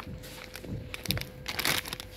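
Plastic cookie bag crinkling as it is handled and set back among other bags, in a few short rustles, the loudest near the end. A faint steady hum runs underneath.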